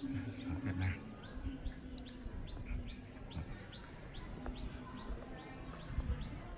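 A small bird calling in a rapid, even series of short, high, down-slurred chirps, about three a second. A low rumble fills the first second.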